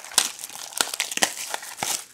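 Plastic shrink wrap being torn and crinkled off a cardboard trading card box, a quick run of irregular crackles.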